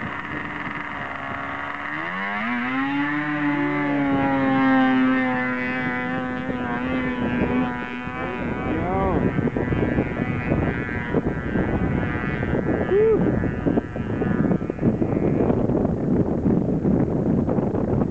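Yamaha GPX 433 snowmobile's two-stroke engine revving up about two seconds in and holding a high, steady pitch at full throttle on a speed run, then falling away after about eight seconds as the sled pulls into the distance. The rest is mostly wind on the microphone.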